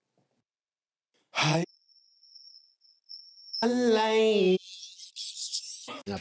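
Pieces of a dry, soloed vocal track playing back with silent gaps. First a short breathy burst, then a thin steady high tone for nearly two seconds. Then about a second of singing voice past the middle, and a high hiss near the end.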